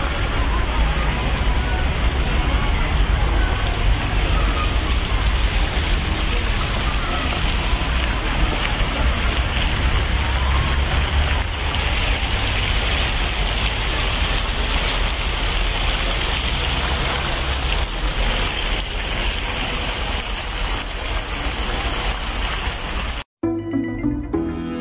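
Park water fountains spraying and splashing into their pools, a steady loud rushing hiss with a low rumble underneath. It cuts off suddenly near the end, and music begins.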